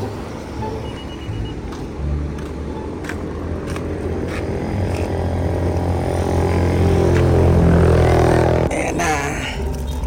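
Road traffic with a motor vehicle's engine growing steadily louder over several seconds, then cutting off suddenly about nine seconds in; a few short clicks sound early on.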